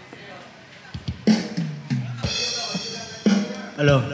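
Live acoustic guitar and electronic keyboard with a drum beat starting a song's intro about a second in, after a quieter moment.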